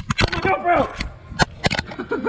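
A truck's stock car radio slammed onto concrete: a sharp crack at the start, then more hard knocks and clattering, with a man's voice calling out briefly in between.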